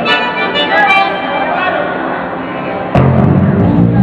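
Live band on stage: held instrument notes for the first few seconds, then about three seconds in a loud, bass-heavy groove kicks in as the band starts the song.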